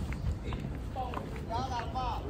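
Footsteps on pavement with wind noise on the phone's microphone, and faint voices about halfway through.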